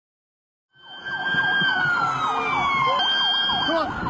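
Several police sirens sounding at once, starting less than a second in: one long tone gliding slowly down in pitch and jumping back up about three seconds in, over a rapid up-and-down yelp.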